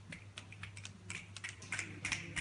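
Scattered audience finger snaps in response to a poetry line, many short sharp clicks a second in no regular rhythm, growing denser toward the end.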